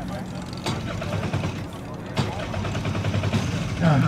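Indistinct background voices of onlookers over a steady low hum, with a man's voice starting at the very end.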